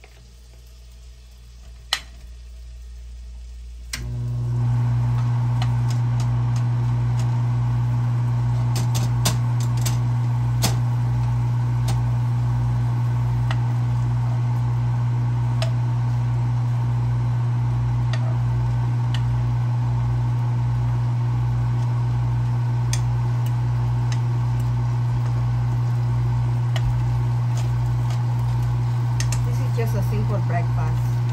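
Bacon frying in a pan, with scattered sharp pops and crackles. About four seconds in, a loud steady electric motor hum starts abruptly and runs on under the sizzle.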